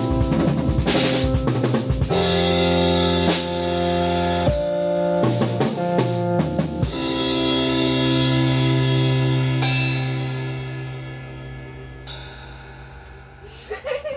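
Electronic keyboard and drum kit playing the end of a song: keyboard chords over drum fills for about seven seconds, then a final held keyboard chord with two cymbal crashes, fading away near the end.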